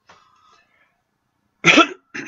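A man coughs once, short and loud, near the end.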